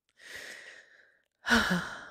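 A woman's close-miked breathing: a long breath in, then, about one and a half seconds in, a louder sigh out with a brief voiced start. This is an emotional pause, where she is letting tears come.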